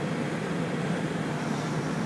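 Van engine idling steadily just after a cold start at about −33 °C, with the heater blower running on defrost, heard from inside the cabin as a steady hum and rush of air.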